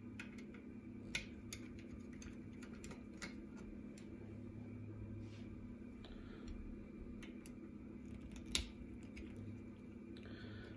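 Small screwdriver working the screws in the Yaesu FT-991A transceiver's metal chassis: scattered light clicks and scrapes of the tip on the screw heads, with one sharper click near the end, over a faint steady hum.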